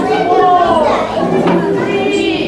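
Many young children's voices overlapping, loud and continuous, in a large hall.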